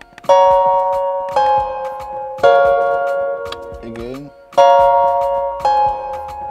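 Beat playing back from a DAW: a bell-like synth melody of chords struck about once a second, with a short rising gliding sound near the middle.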